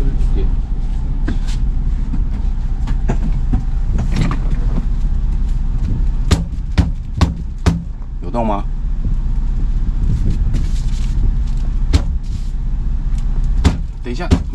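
A boat's steering wheel being knocked onto its shaft with a cloth-padded tool: a series of sharp knocks, with four in quick succession about six to eight seconds in and single ones near the end. A steady low hum runs underneath.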